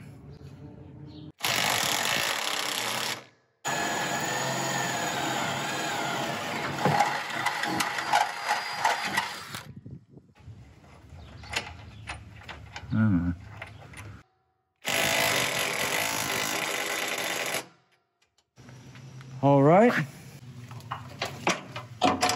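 Electric drill boring upward into aluminum pontoon framing. There are three runs with sudden starts and stops: one of about two seconds, then after a short pause one of about six seconds, and later one of about three seconds.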